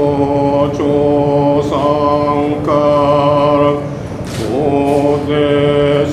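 A single voice chanting a prayer in long, steady held notes of about a second each. Each note begins with a short slide up in pitch, and there is a brief pause for breath just after the middle.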